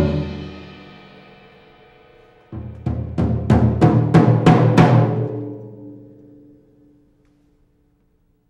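Percussion ensemble playing drums and cymbals. A loud passage cuts off and rings away. After a pause of about two seconds comes a sudden loud hit, then about seven accented strokes, roughly three a second, that fade away.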